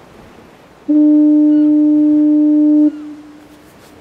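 A foghorn sounding its fog signal, the blast it gives once a minute in fog: one steady, low blast of about two seconds. It starts about a second in, cuts off sharply and leaves a faint tone dying away for under a second.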